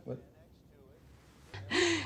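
A person's sharp, breathy gasp about one and a half seconds in, after a near-quiet stretch, running straight into speech.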